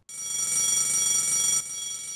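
Electric school bell ringing continuously, dropping in level about one and a half seconds in.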